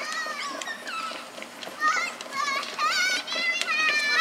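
Children's high-pitched voices chattering and squealing, the words not made out.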